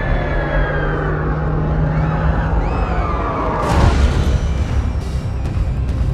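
Dark, tense trailer score with a low drone and several falling tones over the first three seconds. A heavy boom about four seconds in, then more short hits near the end.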